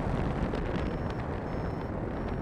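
Wind buffeting an action camera's microphone in flight under a paraglider: a steady low rumble.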